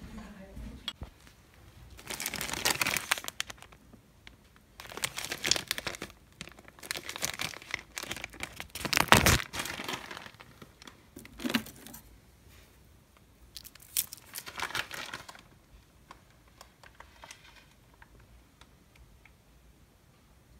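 Plastic wrapping crinkling in several bursts of a second or two, with quiet gaps between them; the loudest burst comes about nine seconds in.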